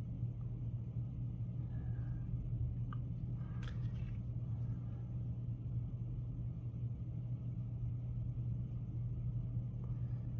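Steady low background hum, with a few faint small clicks.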